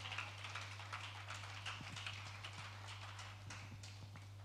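Faint, scattered hand clapping from a congregation, many irregular claps over a steady low hum.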